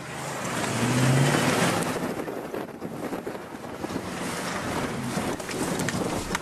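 Ford Raptor pickup driving hard off-road, heard from inside the cab: the engine note rises about a second in, under a steady rush of wind and tyre noise.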